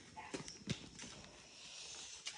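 A few faint, light taps and clicks, two of them about a third and two-thirds of a second in, over quiet room tone.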